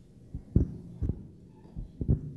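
Handling noise: a few dull, low thumps, irregularly spaced, the two loudest about half a second apart, over a quiet room.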